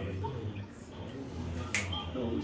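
A single sharp click near the end, over a steady low hum and faint voices in the room.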